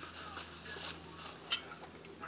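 Faint chewing and mouth sounds of someone eating, with a single sharp click about one and a half seconds in.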